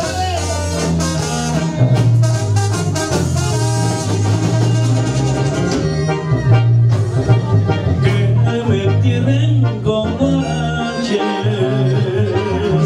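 A live band playing Latin dance music loud through a club sound system, with a heavy repeating bass line.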